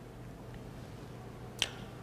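Quiet room tone with a steady low hum, broken by a single sharp click about one and a half seconds in.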